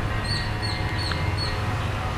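A bird calling four times, short high chirps about half a second apart, over a steady low rumble.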